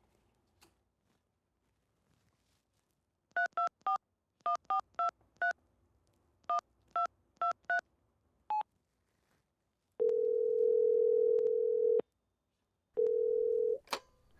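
Phone keypad touch-tones as a number is dialled: about twelve short two-note beeps in quick groups. Then the ringback tone: one long ring, a brief gap, and a second ring that is cut short with a click as the call is answered.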